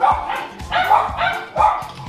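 A dog barking three times in quick succession, over background music.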